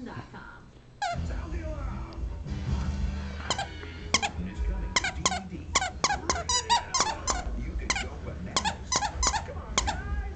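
Dachshund chewing a plush purple dinosaur squeaky toy, squeezing its squeaker over and over. From a few seconds in the toy gives a rapid string of short, high squeaks, about two or three a second.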